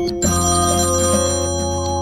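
An iPhone ringing for an incoming call, playing a musical ringtone: sustained chords over a steady beat, moving to a new chord about a quarter second in.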